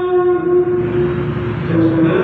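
A man's voice chanting into a handheld microphone, holding one long note that turns rougher past the middle and dips slightly in pitch near the end.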